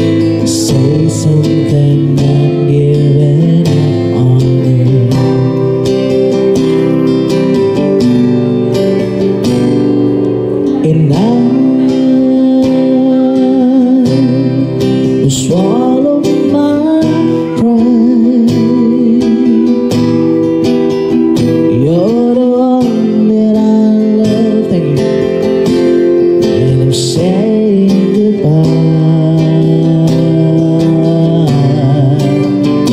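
Acoustic guitar played through a PA. About a third of the way in, a man's voice comes in singing slow, sustained notes that slide up and waver with vibrato.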